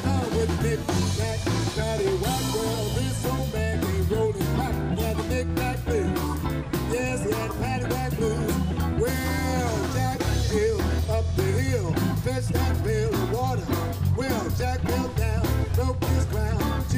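Live blues band playing an uptempo shuffle on electric guitar, electric bass, drums and keyboard, with a lead line of bending notes over the steady beat.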